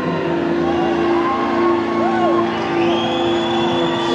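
Live rock band music: a sustained held chord with short bending, gliding lead notes above it, and a higher note that slides up and holds near the end.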